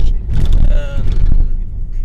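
Steady low engine and road rumble inside the cabin of a Nissan 100NX driving at speed, with a brief vocal sound about half a second in; near the end only the rumble is left.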